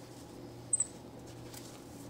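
A white-faced capuchin monkey gives one very brief, very high squeak a little under a second in, over faint fabric handling and a low steady hum.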